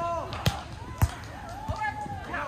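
A volleyball struck twice by players' hands or forearms: two sharp slaps about half a second apart, with players shouting and calling out around them.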